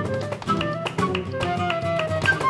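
Live flamenco-jazz band with flute, flamenco guitar, bass guitar and hand percussion, over which a flamenco dancer's heel-and-toe footwork (zapateado) strikes the wooden stage in a run of sharp taps, with handclaps (palmas) keeping time.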